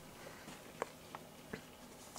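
Quiet room tone with three faint, short clicks in the middle of the stretch.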